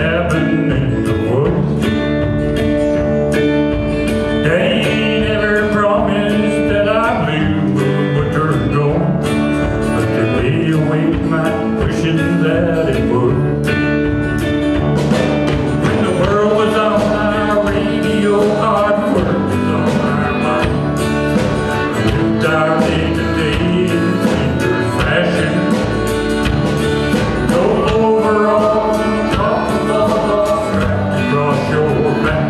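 Live country band playing a song: accordion, acoustic guitars, electric guitar and drums.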